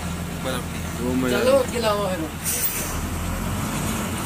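Bus engine droning steadily, heard from inside the passenger cabin, with voices talking over it and a short hiss about halfway through.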